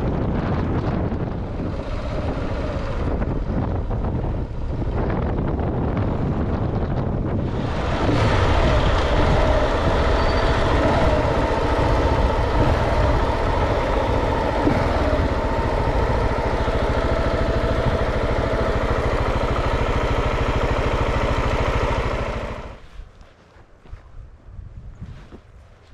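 KTM 690 Enduro R's single-cylinder engine running, heard with wind on the helmet-camera microphone. About eight seconds in it gets louder, with a hiss over it, and it cuts off suddenly near the end.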